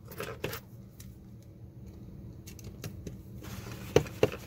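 Faint clicks and taps of a small kit circuit board being handled on a cutting mat. Rustling of a plastic sheet near the end, closing on a sharp click.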